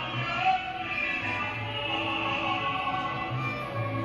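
Mariachi music playing from a television's speaker: held instrument lines over a steady bass.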